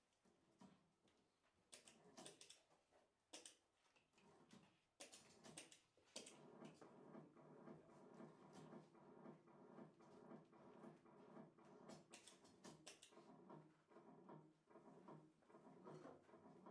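Quiet experimental live electronics: sparse, irregular sharp clicks, then about six seconds in a dense, fast-pulsing drone of several steady tones joins them, with further clusters of clicks near the end.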